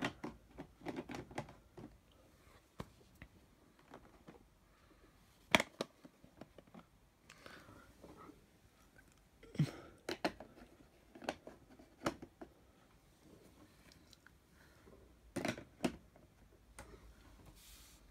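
Handling noise: scattered light clicks and taps, a few at a time and several seconds apart, over quiet room tone.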